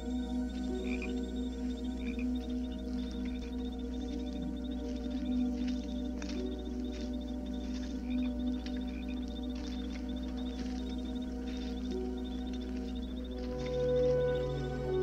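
Night jungle ambience on a film soundtrack: frogs croaking now and then and insects chirring in a fast steady pulse, over soft sustained music of held low notes.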